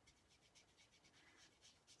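Very faint, quick scratchy dabbing, several soft strokes a second: a foam ink dauber worn on a fingertip, pressed repeatedly against a thin metal die laid over card to colour it in.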